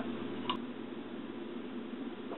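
Someone drinking from a glass: one brief click about half a second in, then only a steady low hiss.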